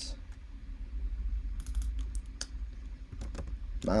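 Computer keyboard keys clicking in a scattered handful of keystrokes as a line of code is pasted and a variable name retyped, several close together in the middle and near the end, over a faint low hum.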